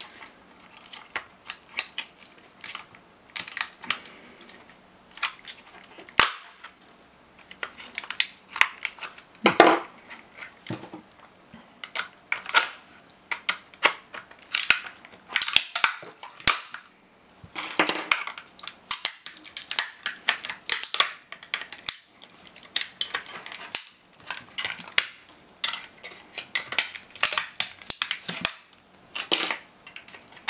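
Hard plastic laptop battery case cracking and snapping as it is pried and broken apart with a screwdriver and pliers: a long, irregular run of sharp cracks and clicks, some loud.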